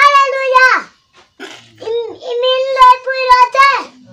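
A young boy's loud, high-pitched voice chanting prayer in long drawn-out phrases: one in the first second, a short rising and falling one about two seconds in, and a longer held one ending just before the end.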